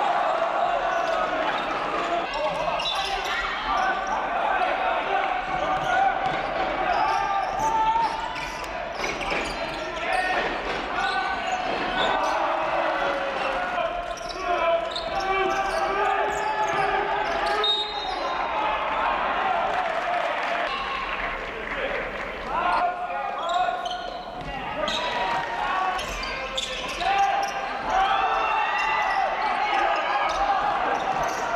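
Live basketball play on a hardwood court in a large arena: the ball bouncing as it is dribbled, mixed with players and benches shouting and calling out throughout.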